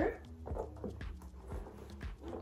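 Soft scattered knocks and rustles of a black leather saddle handbag being handled as a small card holder is put inside, over a low steady hum.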